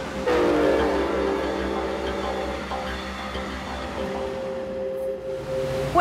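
A train horn sounding one long chord of several tones that starts about a third of a second in and slowly fades away, over a low steady rumble.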